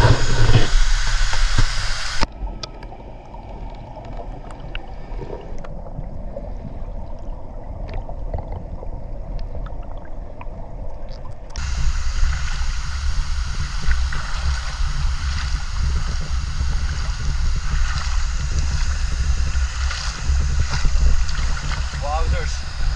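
Creek water heard through a camera in a waterproof housing that is dipped underwater: from about two seconds in the sound turns dull and muffled, with faint clicks, for about nine seconds. Near the middle the camera comes back out and the sound opens up into running stream water with a low rumble from the housing.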